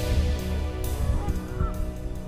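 White domestic geese giving a few short honks on the water, over background music that is fading out.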